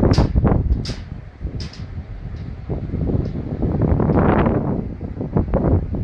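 Wind noise on the microphone: an uneven low rumble that swells about four seconds in, with a few short hissing bursts in the first two seconds.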